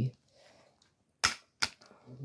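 Two sharp plastic clicks, about half a second apart, the first the louder, from a small plastic spinning-top toy being handled against its plastic launcher.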